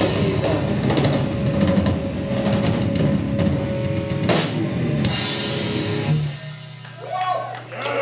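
Live rock band with drum kit, electric guitar and bass guitar playing the closing bars of a song, with a sharp hit about four seconds in. The playing stops about six seconds in, leaving a low note ringing, and a voice comes in near the end.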